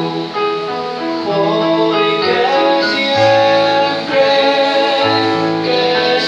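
Live worship music: a man singing through a handheld microphone and PA, over instrumental accompaniment with held chords and a sustained bass line.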